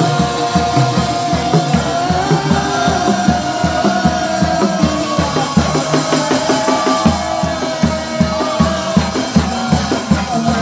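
Live chầu văn ritual music with a steady, driving drum beat under a sustained, gently bending melodic line, played loud through loudspeakers.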